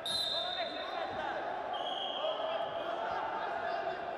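Wrestling shoes squeaking on the mat as the wrestlers push and shift their feet: two short high squeaks, one right at the start and a slightly lower one about two seconds in.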